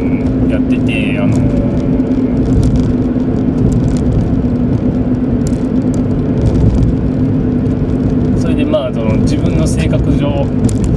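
Steady drone of a car's engine and tyres heard from inside the cabin while driving at an even speed, with a constant low hum running throughout.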